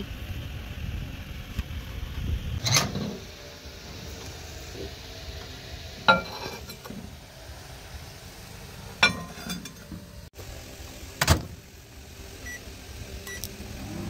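Four sharp knocks and clicks as a ceramic cup and a microwave oven are handled, then two short, faint beeps near the end as the microwave's keypad is set.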